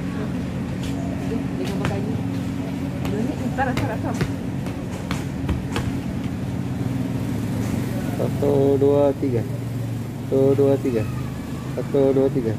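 A steady low mechanical hum runs throughout, with a few light clicks in the first half. A voice starts counting "one, two, three" over it about two thirds of the way in.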